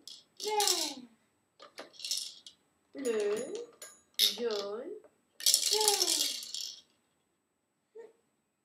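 Plastic rolling colour drums on a Baby Einstein activity saucer rattling as they are turned by hand, in about five short bursts. Sliding, voice-like pitched sounds come with each burst.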